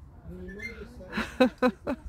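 Indistinct voices talking at a distance, with a few sharp short clicks about a second and a half in.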